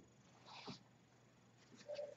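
Near silence: quiet room tone with a few faint, brief soft sounds, one about half a second in and a short faint hum near the end.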